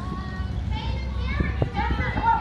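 Indistinct voices of several people talking off-microphone, fairly high-pitched, over a steady low rumble of street noise.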